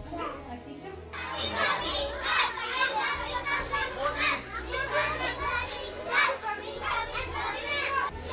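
A group of young children calling out together as they play, many overlapping voices, starting about a second in.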